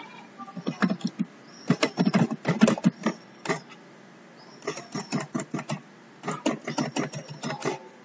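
Computer keyboard being typed on: bursts of quick key clicks with short pauses between them, ending in a run of repeated single key presses.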